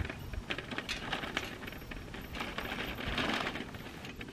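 A plastic shopping cart dragged on a rope over dry dirt, its wheels and frame rattling and clattering in a run of quick clinks, loudest about three seconds in.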